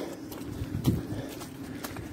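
Footsteps of a walker carrying a heavy rucksack on soft woodland ground, with a heavier, low thud of a step just under a second in.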